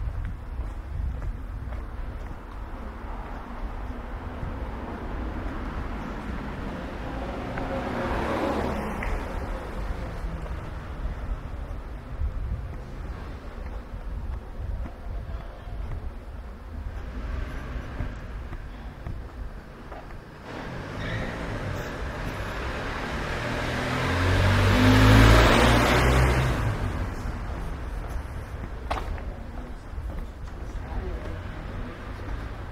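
A motor vehicle passes along a narrow street, its engine and tyre noise building to a loud peak near the end and then fading, with a fainter vehicle passing about eight seconds in. A steady low street rumble runs underneath.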